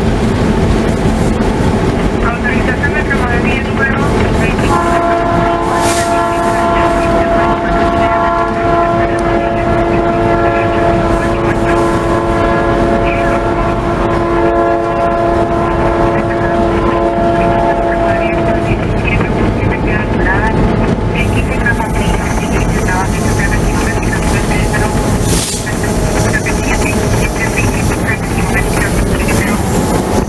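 Diesel locomotive running, heard from inside the cab, with its multi-chime air horn sounding one long steady chord for about fourteen seconds, starting about five seconds in. A thin high whine comes in over the running noise near the end.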